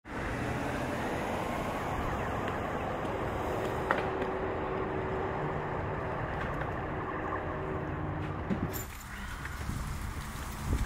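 Steady low rumble of vehicle noise with a faint hum, broken by a single sharp click about four seconds in; the rumble drops away near the end.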